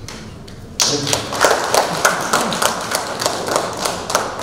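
A small group clapping, starting suddenly about a second in and going on as irregular, overlapping claps.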